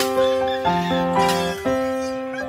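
Background music: a keyboard melody of sustained, piano-like notes, a new note or chord about every half second.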